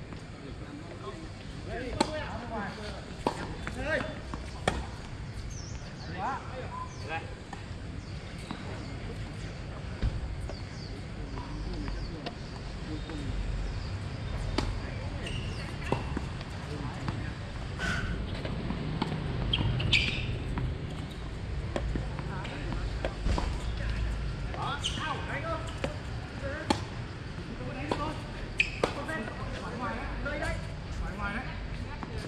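Tennis balls struck by racquets and bouncing on a hard court: single sharp pops at irregular intervals through the rally, with voices in the background.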